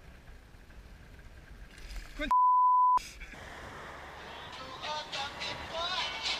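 Faint background noise, then an electronic beep about two seconds in: a single steady tone under a second long, the loudest sound here, with all other sound cut out around it. After it, a hip-hop backing track fades in and grows louder.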